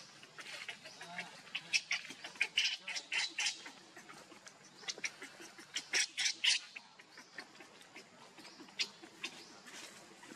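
Infant pig-tailed macaque crying: repeated short, high-pitched squeals in two bouts, the first about two seconds in and the second around six seconds in.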